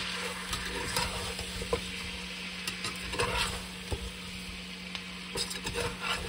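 Chicken legs and spices sizzling in hot oil in a pressure cooker, stirred with a perforated metal spatula that clicks and scrapes against the pot now and then: the masala being roasted (bhuna) with the chicken.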